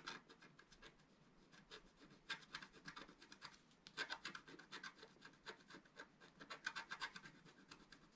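Pointed wooden stylus scratching the black coating off a scratch-art sheet: faint runs of rapid short strokes with brief pauses between.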